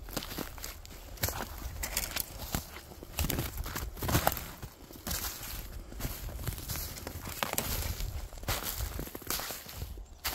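Footsteps crunching through snow littered with twigs and dead leaves, an irregular run of crunches and small snaps.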